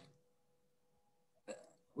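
Near silence in a pause in a man's speech, broken about one and a half seconds in by a brief intake of breath just before he speaks again.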